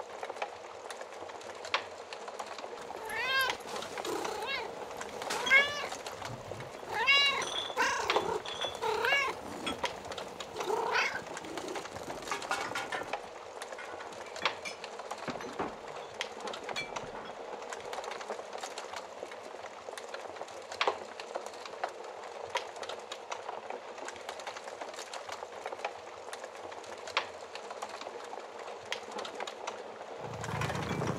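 A cat meowing, a string of short rising-and-falling meows in the first third, over a steady crackling fire with occasional sharp pops.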